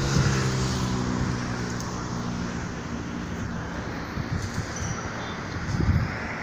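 A motor vehicle's engine hum, one steady pitch that fades away over the first half, leaving faint outdoor wind noise.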